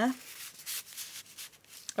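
Paper rubbing and rustling as a notepaper card slides into a pocket of scrunched parcel packaging paper, in several short scrapes.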